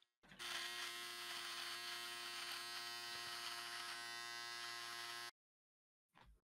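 Electric foil shaver running against the upper lip as it shaves off a moustache: a faint, steady humming buzz that cuts off suddenly about five seconds in.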